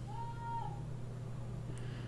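A cat meowing once, a short, slightly arching cry, over a steady low hum.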